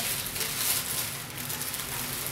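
Rustling and crackling of the wrapping on a bar of handmade soap as it is handled and turned in the hands, a steady crinkly rustle made of many small crackles.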